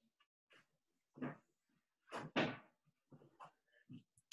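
A few short knocks and scuffs of household handling, the loudest pair about two seconds in, heard over a video-call connection.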